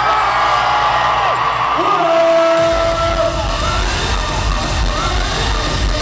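Live dance-pop music through an arena sound system, heard from the audience, with a voice singing long held notes. The bass and beat drop out for a moment and come back strongly about two and a half seconds in.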